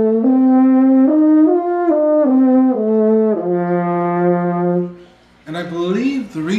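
French horn played with a short run of notes stepping up and back down, ending on a long held low F, demonstrating that the horn is pitched in F. The horn stops about five seconds in.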